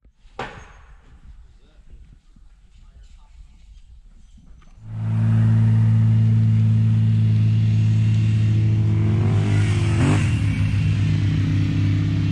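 After a few seconds of faint background, an engine comes in loud about five seconds in and runs at a steady speed as its vehicle tows a chain-pulled drag that grades the sand drag strip, its pitch wavering briefly near the end.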